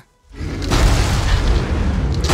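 After a brief moment of silence, a loud, deep boom swells in and holds as a dense rumble: a film-trailer sound effect with music under it.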